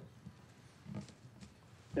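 Quiet room tone in a pause between speakers, with one short, faint, low sound about halfway through.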